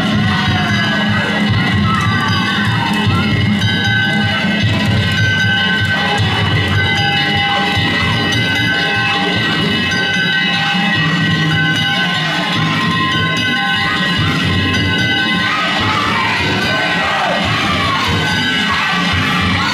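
Danjiri festival music: a drum with hand gongs ringing, over a crowd of float pullers shouting and chanting, the voices growing louder near the end.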